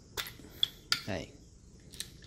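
A few sharp metallic clicks from a silver spinning reel as its spool is worked off the spindle, three in the first second.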